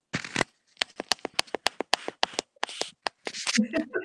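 A quick run of sharp clicks and rustles, about five a second, followed by a brief fragment of a voice near the end.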